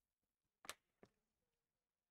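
Near silence broken by two faint short clicks, the first about two-thirds of a second in and a weaker one about a second in.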